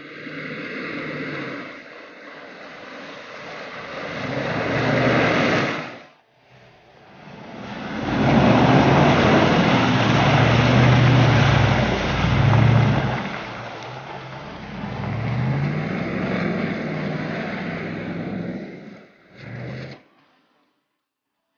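Range Rover P38's 4.6-litre V8 engine revving up and down under load, with its tyres churning through mud. The sound breaks off sharply about six seconds in, then builds up again.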